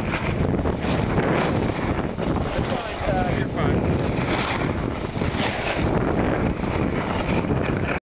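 Wind buffeting the camera's microphone as it moves fast down a snowy slope: a steady rushing noise, with a short faint call about three seconds in.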